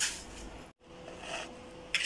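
Granulated sugar poured from a small ceramic bowl into a large ceramic mixing bowl: a short hiss that fades within about half a second. After a brief gap, faint scraping in the bowl.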